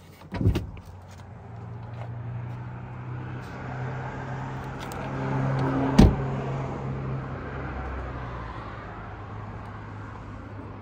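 A clunk about half a second in as the hood release lever is pulled, then a car door shut hard about six seconds in, the loudest sound. Under both, a steady vehicle engine hum swells and then eases off.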